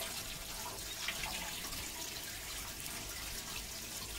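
Pond water pouring steadily from a pipe outlet onto the flat mesh screen of a homemade sieve filter box, a continuous splashing.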